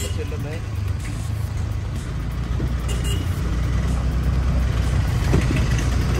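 Steady low rumble of a vehicle on the move through street traffic, with wind on the microphone.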